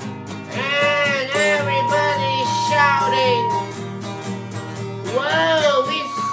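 Wordless overtone (throat) singing over acoustic guitar: a low droning voice with sweeping overtones. A thin whistle-like overtone is held for about two seconds mid-way, and again near the end.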